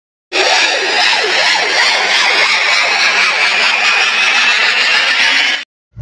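Loud hissing, noisy intro sound effect under an animated title graphic, with a faint tone slowly rising in pitch inside the noise; it starts abruptly and cuts off sharply near the end.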